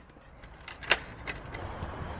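Keys turning in a front-door lock: a few small clicks and a jingle of the key bunch, with one sharper click about a second in.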